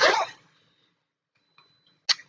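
A brief breathy vocal noise from a woman, then near silence with a faint high steady whine.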